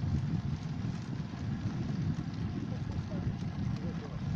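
Wind rumbling on the microphone of a camera on a moving bicycle, a steady low, fluttering noise, with road noise from riding over rough asphalt.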